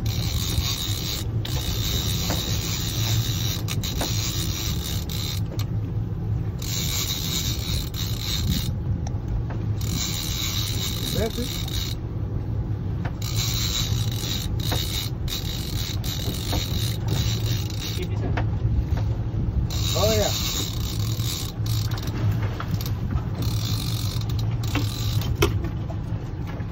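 Outboard boat engines running steadily at trolling speed, with wind and sea noise. Over it, the mechanism of a heavy trolling reel is heard as the line on a bent rod is wound in.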